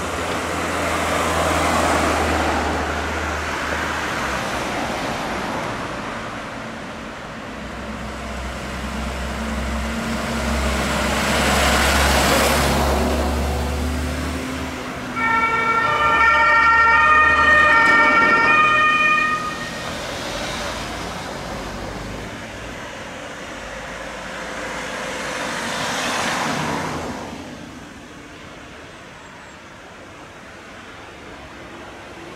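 Emergency vehicles driving past on a street, their engines and tyres swelling and fading in several passes. About halfway through, a German two-tone siren (Martinshorn) sounds loudly for about four seconds, alternating between its two notes, then cuts off.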